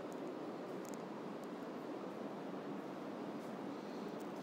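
Steady, even background hiss of room tone, with no distinct sounds standing out.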